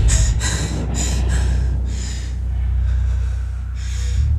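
A woman breathing hard in short, quick gasps that space out a little toward the end, over a steady low drone.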